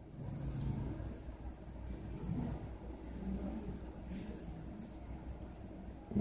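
Faint handling noise of fingers holding and touching a metal wristwatch: an uneven low rumble with soft rubbing and a few light clicks.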